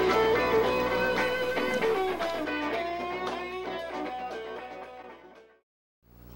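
Guitar-led background music with plucked notes, fading out and ending in silence shortly before the end.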